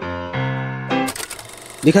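Intro music of held keyboard-like notes for about the first second, then a rapid clicking rattle, a film-reel transition sound effect, lasting under a second. A man's voice starts speaking at the very end.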